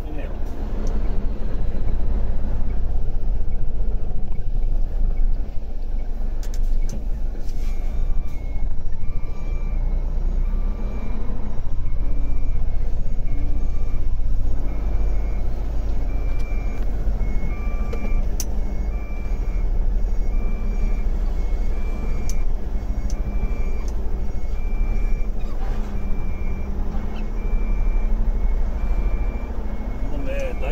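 Tractor-trailer's diesel engine running low and steady, heard from inside the cab. From about eight seconds in, the reversing alarm beeps about once a second as the rig backs up.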